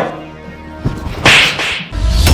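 A hard slap across the face: one loud, sharp crack about a second and a quarter in.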